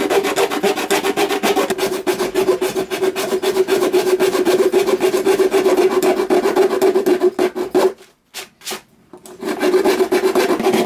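A saw blade cutting through a fibreglass armour shell along its seam, in fast, even rasping strokes. It stops abruptly about eight seconds in and starts again a second and a half later.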